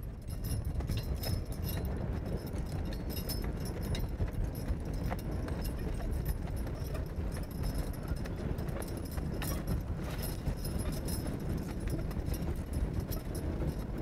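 Hooves of a two-animal draft team clopping on loose dirt, with harness chains jingling. A large tractor tire scrapes through the dirt behind them as a drag.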